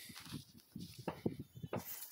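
Faint, irregular scuffs and crunches, as of dry gravelly dirt and rock being handled and shifted underfoot or by hand.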